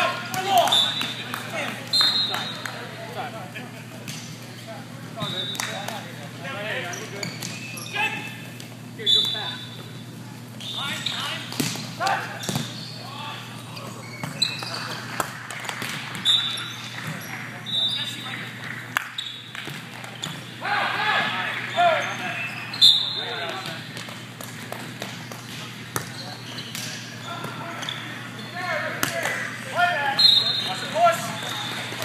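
Indoor volleyball play in a large hall: a series of sharp hits as the ball is struck and bounces on the court, among indistinct shouts and voices of the players, over a steady low hum.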